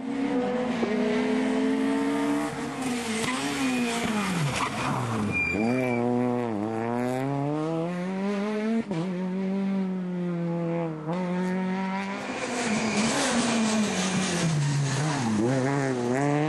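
Peugeot 208 rally car engine revving hard, its pitch climbing through the gears with brief breaks at the upshifts. The revs fall sharply twice, about five seconds in and again near the end, as the car brakes and downshifts for corners, then rise again as it accelerates out.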